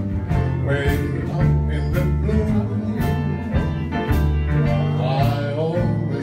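Band music with a steady beat: drum strokes about twice a second over a bass line that moves note by note, with instruments above.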